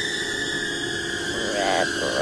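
Eerie, sustained film-score drone of many held tones. A child's voice saying "redrum" comes in near the end.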